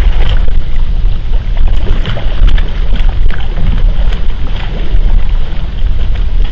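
Heavy wind rumble on the microphone over irregular splashing of a hooked bass thrashing at the water's surface as it is netted beside the boat.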